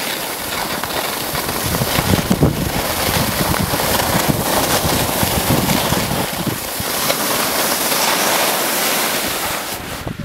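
Wind rushing over the microphone of a skier's camera moving fast over snow, a loud steady rush that swells and eases a little, mixed with the hiss of skis sliding on snow.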